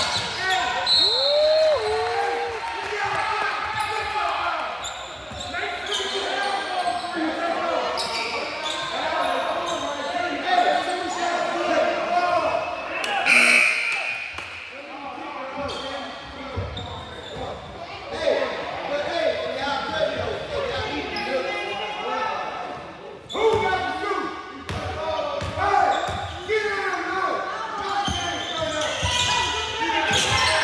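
Basketball bouncing on a hardwood gym floor, mixed with indistinct shouts and chatter from players and spectators, echoing in a large gym.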